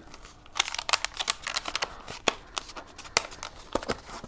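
A thin plastic colour gel and its ring holder being handled and pressed together by hand: irregular small crinkles and clicks, with a few sharper clicks.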